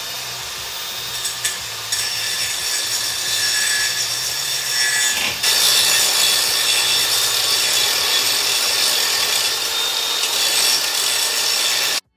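Angle grinder grinding down a steel sway-bar link bolt, the abrasive disc on metal making a steady, high grinding hiss that gets louder about five seconds in.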